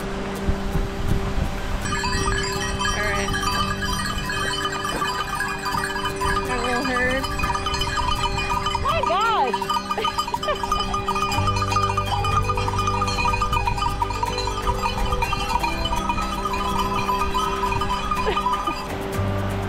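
Background music with long held notes, over which Boer goats bleat a few times: about three seconds in, around seven seconds, and again around nine to ten seconds.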